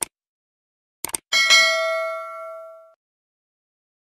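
Subscribe-button sound effect: a short mouse click at the start, a quick double click about a second in, then a bright notification-bell ding with several ringing tones that fades out over about a second and a half.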